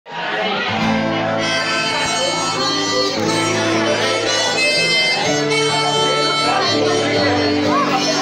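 Acoustic guitar strummed under a harmonica playing a slow melody in long held notes: an instrumental intro before the singing starts.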